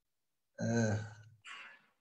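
A man's short voiced vocal sound about half a second in, followed by a breathy exhale, heard over a video-call audio feed.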